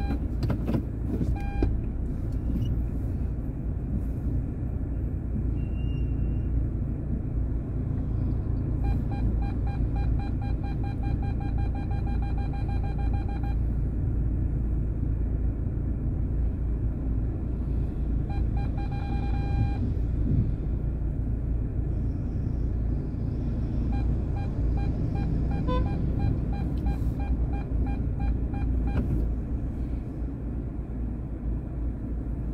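Steady low rumble of a car's engine and road noise heard from inside the cabin. A high, pitched tone sounds three times over it, each for a few seconds.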